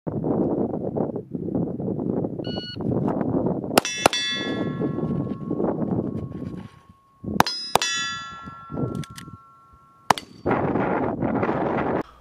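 Five handgun shots, two quick pairs and then a single shot near the end, each hit making a steel target ring with long clear tones that fade over a few seconds.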